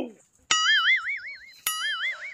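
A comic sound effect: two twanging plucked-string notes, each starting sharply and then wavering up and down in pitch as it fades, the second about a second after the first.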